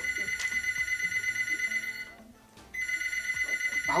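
Mobile phone ringing: a rapidly pulsing electronic ring at a steady high pitch, in two rings with a short break about two seconds in.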